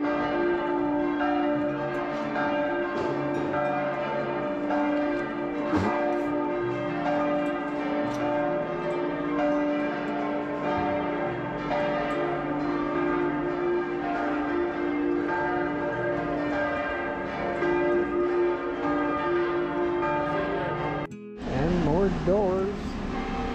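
Several church bells pealing together: a continuous ringing of overlapping tones that keep restriking, cutting off abruptly about a second before the end.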